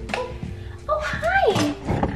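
A dog whining: one high whine about a second in that rises and then slides down.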